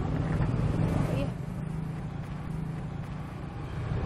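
A motor vehicle engine running steadily, a low hum over street background noise, with a faint voice in the first second.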